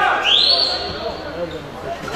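A single shrill whistle about a quarter second in, rising quickly in pitch and then held for about a second, with players' shouts on the pitch before and after it.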